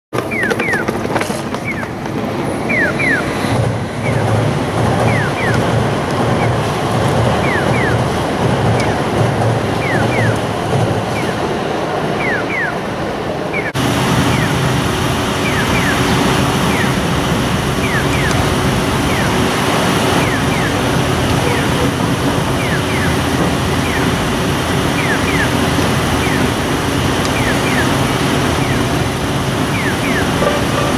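Street traffic noise at an intersection, with short descending chirps repeating every second or so, singly and in pairs. About 14 s in the sound cuts abruptly to a denser, louder background of traffic.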